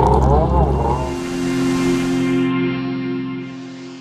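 Jet ski engine whining, its pitch wavering up and down, for about the first second; it cuts off abruptly and gives way to a held music chord that fades out.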